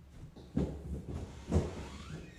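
Low rumble with two dull knocks, about half a second and a second and a half in.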